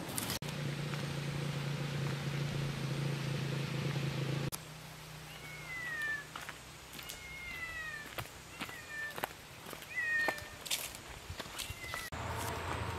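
A kitten mewing about six times in the second half, each a short, high cry falling in pitch. Before that comes a steady low hum, which stops abruptly about four and a half seconds in.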